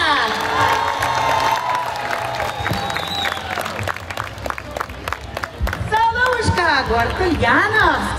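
Loud audience applause with some cheering as a song ends, the last held note fading out in the first few seconds. A woman starts speaking over the clapping about six seconds in.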